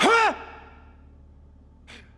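A man's single short, high-pitched vocal cry, rising then falling in pitch, followed near the end by a brief, faint breath-like noise.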